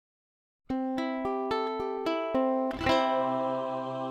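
A ukulele plays a short intro tune: about seven single plucked notes roughly a quarter-second apart, then a quick strummed chord that rings on and slowly fades.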